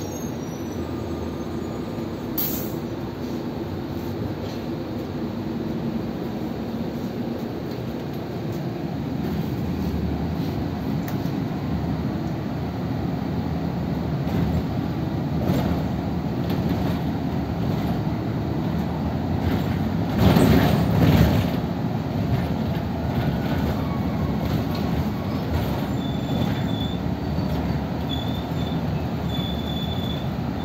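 Interior noise of a moving city bus: steady engine and road rumble. A sharp click comes a couple of seconds in, a louder rush about two-thirds of the way through, and short, repeated high-pitched tones near the end.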